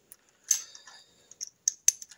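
Small metal parts handled at the engine's timing case: a sharp metallic click with a brief ringing about half a second in, then a few quick light ticks near the end.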